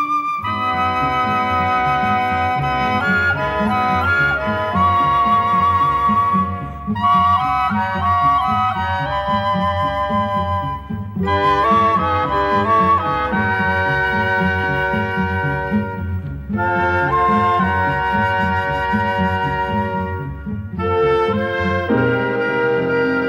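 Orchestral instrumental music: a woodwind melody with vibrato over a steady, pulsing low accompaniment, in phrases with short breaks between them.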